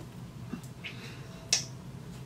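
A single sharp click about a second and a half in, with a fainter tick before it, over quiet room tone.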